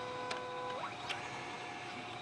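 HPLC autosampler's motor whining at a steady pitch, then gliding up in pitch just under a second in, with a couple of light clicks over a constant mechanical hum.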